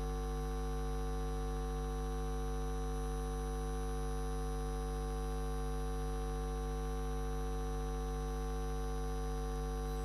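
Steady electrical mains hum with a buzzy edge, unchanging throughout.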